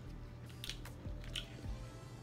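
Faint eating sounds: a handful of short, scattered cracks and clicks as snow crab is shelled by hand and chewed.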